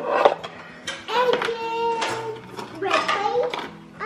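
A small child's voice making long drawn-out, sing-song sounds without words, over soft background music that comes in about halfway. A brief clatter of plastic cutlery being picked out of a drawer tray at the very start.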